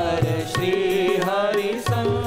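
A man singing a Gujarati devotional song (kirtan), the melody bending and wavering on held notes, with tabla and other percussion accompanying.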